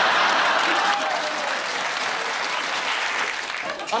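Studio audience applauding and laughing, loudest at the start and gradually dying down.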